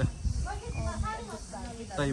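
People talking casually, over a steady low rumble and hiss from riding in the open back of a moving truck.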